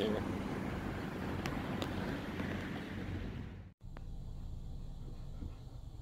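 Steady outdoor background noise with a low rumble, cut off suddenly about two-thirds of the way in. It is followed by the quieter, steady low hum of a car's interior.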